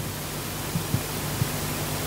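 Steady hiss of background noise with a faint low hum beneath it; no playing or singing.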